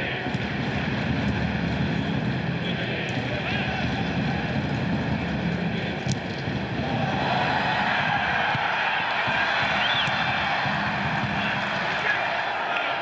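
Football stadium crowd noise during open play: a steady din from the fans in the stands, swelling slightly about seven seconds in.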